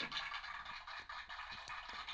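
Faint scratching and light plastic clicks of LEGO pieces being handled and picked out by hand, with a few small ticks about a second in and near the end.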